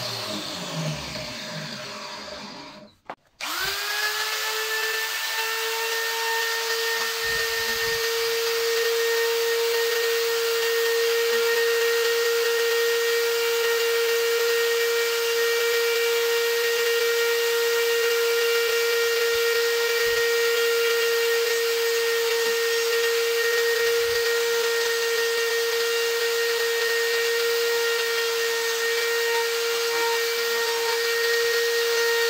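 A power tool winds down, its pitch falling, and after a brief gap an electric die grinder starts up, rising quickly to a steady high whine as its carving burr cuts into the wood.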